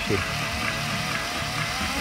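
Cordless drill motor, run straight off batteries through a speed controller, driving a shaker table's linkage at a fast setting: a steady motor whine that wavers slightly in pitch, over a low throbbing rumble.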